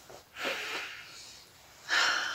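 A woman takes a long breath in through her nose, then lets out a louder breathy sigh near the end.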